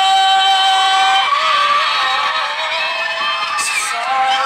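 A singer holds one long high note over backing music until about a second in, then an audience cheers and screams while the music carries on.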